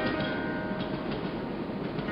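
New York City subway train moving along a station platform: a steady noise of wheels on rails.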